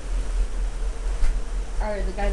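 Wind buffeting the microphone, a steady low rumble with a faint constant hum under it. A voice starts just before the end.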